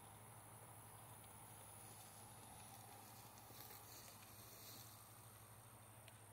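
Near silence: faint outdoor background with a low steady hum.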